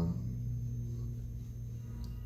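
Steady low hum with a few faint higher tones, and no distinct clicks or knocks.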